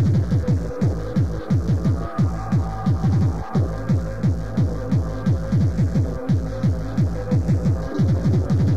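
Fast hardcore tekno from a DJ mix: a rapid, unbroken kick drum, each kick dropping in pitch, over held droning synth tones.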